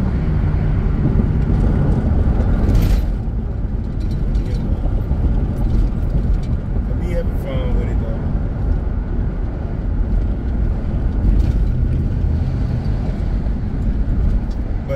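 Steady engine and road noise heard inside the cabin of a Chevrolet Tahoe PPV driving on city streets, mostly a low rumble.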